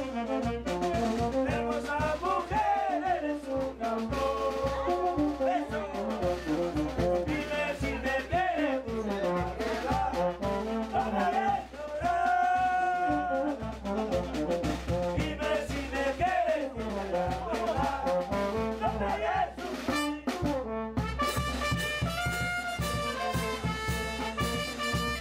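Live brass band playing a lively dance tune: saxophones and trumpet carry the melody with sliding notes over a tuba bass line and a steady bass-drum beat.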